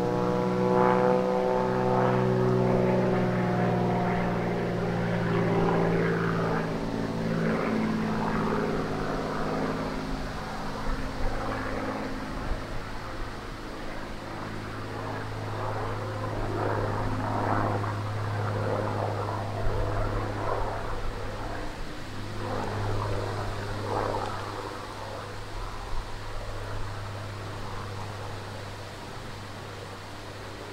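XtremeAir XA42 aerobatic plane's piston engine and propeller in flight, the note sliding down in pitch over the first several seconds as it manoeuvres, then settling into a rougher steady drone that fades toward the end as the plane draws away.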